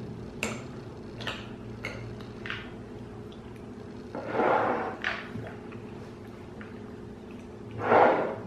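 Metal spoons faintly clicking and scraping in glass bowls of ice cream, a few soft clicks in the first three seconds, with a short breathy noise about four seconds in over a low steady room hum.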